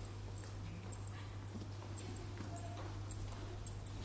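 Quiet hall room tone: a steady low electrical hum with faint scattered ticks and faint distant murmuring.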